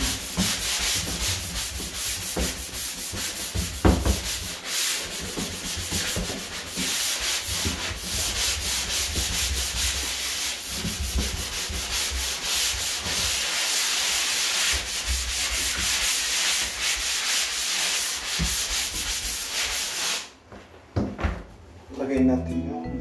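Drywall being hand-sanded with a sanding sponge: loud, scratchy rubbing made of rapid back-and-forth strokes, stopping a couple of seconds before the end.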